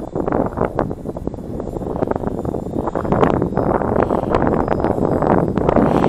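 Strong, gusty wind buffeting the microphone: a rough, uneven rumble that grows louder toward the end.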